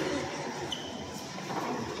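Low background noise with faint, indistinct voices, and a short faint beep a little under a second in.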